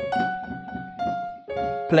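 Piano chords played in turn, three strikes about a second and half a second apart, each left to ring: the plain basic harmony of the melody, before any added second, sixth or seventh.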